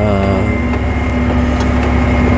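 Claas Axion 830 tractor engine running steadily under load while pulling a seed drill: an even low drone with a constant hum and no change in speed.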